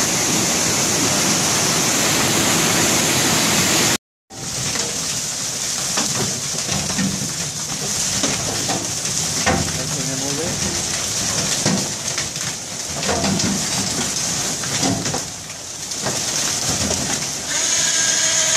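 Rushing creek water pouring over rocks. After a sudden cut about four seconds in, a steady rush of river water with indistinct voices and scattered knocks and clatter of men working on a metal fish-trap deck. Near the end a machine starts a steady hum.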